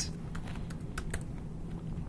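Computer keyboard typing: several separate, irregularly spaced keystrokes as a short value is typed in.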